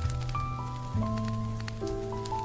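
Smooth jazz music on piano with a bass line, the chord and bass changing about a second in, over a steady background patter of rain.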